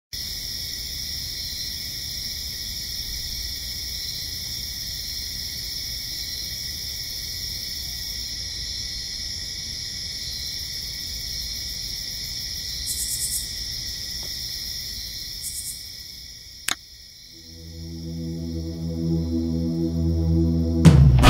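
Steady chorus of chirping crickets over a low rumble, with a sharp click about three-quarters of the way through. Near the end a sustained low chord fades in and grows louder as the song's intro begins.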